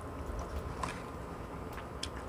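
Faint chewing of a mouthful of chicken, with a few soft mouth clicks over a low steady hum.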